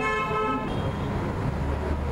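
A steady, unchanging held tone with many overtones, horn-like, that cuts off under a second in, followed by a low rumble.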